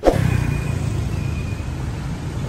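Road traffic: a motor vehicle running close by, with steady road noise.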